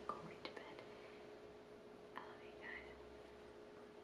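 Near silence: faint room tone with a thin steady hum, a few faint ticks and soft breathy whisper-like sounds a little after two seconds in.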